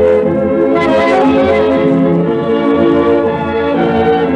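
A dance orchestra playing a tango with long held notes, from a digitized 78 rpm shellac record.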